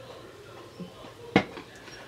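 A single sharp click of a hard object knocking against a hard surface, a little past halfway, over quiet room tone.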